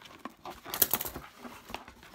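Cardboard box being torn and pulled open by hand, packing tape ripping and flaps scraping: a run of scratchy rustles and clicks with a sharper rip a little under a second in.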